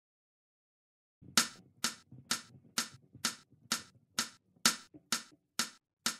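Metronome click track ticking evenly, about two sharp clicks a second, starting after a second of silence: a count-in before the guitar enters.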